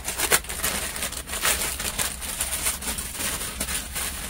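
Plastic packaging crinkling and rustling as it is handled, a run of irregular crackles and rustles.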